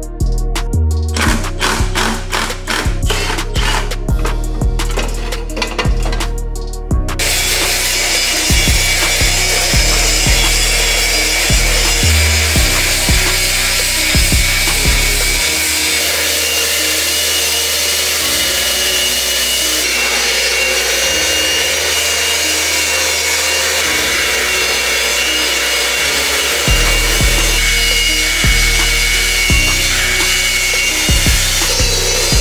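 Angle grinder fitted with a nylon cup brush scouring rust and paint off the engine bay's sheet metal, a steady high whine over a rasping scrub, starting about seven seconds in and running on. Background music with a beat plays throughout.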